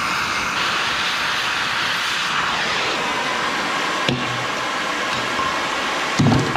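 Cutting torch cutting a steel pipe, a steady loud hiss, with a single sharp metal knock about four seconds in.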